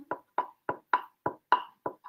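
Glue stick dragged in short strokes across a small magazine-paper scrap, pushed from the middle out off each edge to coat every edge with glue. There are about seven quick strokes, three or four a second.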